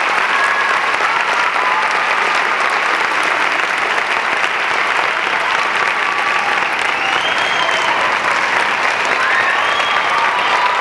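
Audience applauding steadily and loudly, with a few voices calling out over the clapping.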